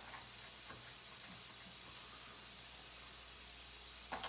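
Faint steady sizzle of mushrooms sautéing in oil in a skillet, with a few light clicks from a garlic rocker pressing garlic cloves on a plastic cutting board in the first second or so.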